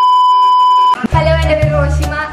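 Steady 1 kHz test-pattern beep, the TV colour-bars tone, held for about a second and cut off abruptly. Then music with a heavy, evenly repeating bass beat comes in.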